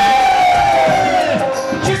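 Live Hindu devotional bhajan music from a stage band with harmonium and drums, with a long held note that slides slowly downward over about a second and a half, and a crowd cheering.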